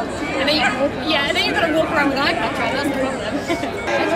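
Chatter: several people talking over one another, with no single voice standing out clearly.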